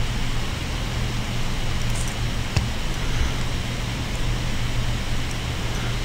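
Steady room noise: a low hum with hiss over it, and a single click about two and a half seconds in.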